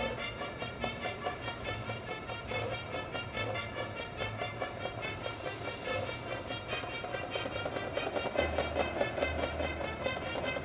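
High school marching band and front-ensemble percussion playing a field show, with a quick, even pulse of struck notes running through the music. Low sustained bass notes come in about eight seconds in.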